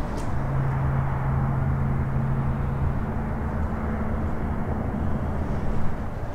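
Steady low mechanical hum over a rushing noise, with a deep tone that fades about halfway through.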